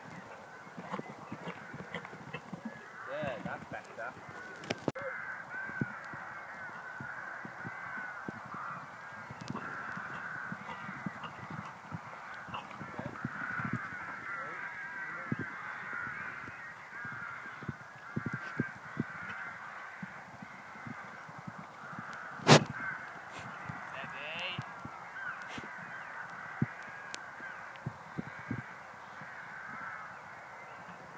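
A dense chorus of birds calling throughout, with crow-like calls among it. Scattered low thuds run under it, and one sharp knock comes about two-thirds of the way through.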